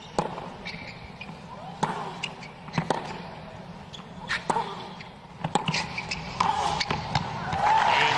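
A tennis rally on a hard court: sharp racket strikes on the ball, about once a second, over a low crowd murmur. Crowd noise swells near the end.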